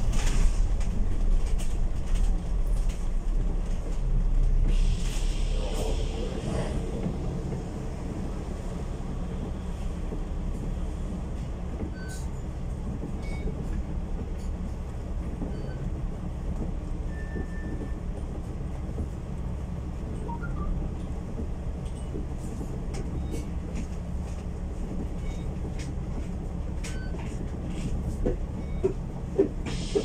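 Alexander Dennis Enviro500 MMC double-decker bus's diesel engine and drivetrain running, heard from inside on the upper deck. It is louder for the first several seconds, with a short hiss about five seconds in, then settles to a steady idle while the bus stands still.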